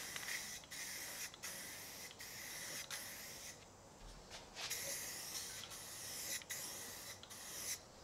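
Rust-Oleum aerosol spray paint can hissing in repeated passes, worked through a clip-on trigger handle. The spray stops briefly every second or so, with a slightly longer pause about halfway through.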